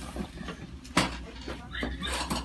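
A single sharp pop about a second in, during a chiropractic neck manipulation: the audible release of a cervical joint being adjusted.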